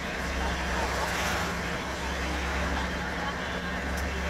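Road traffic heard from a moving vehicle: a steady low engine hum under road noise, with oncoming vehicles passing, swelling slightly about a second in.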